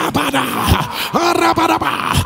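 A man's voice praying aloud in short, strained, wordless cries, with one note held for about half a second midway.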